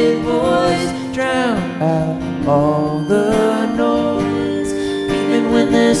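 Live band music between sung lines: held chords under a melody line that glides up and down, falling steeply about a second and a half in.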